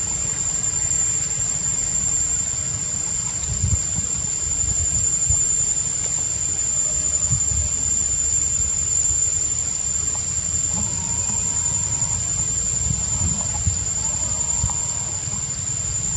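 Forest insects droning at one steady high pitch, over a low rumble with scattered soft thumps.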